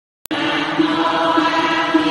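Vietnamese Buddhist chanting invoking the Buddha's name (niệm Phật), sung on a steady, level pitch. It starts after a brief silent gap with a small click at the very beginning.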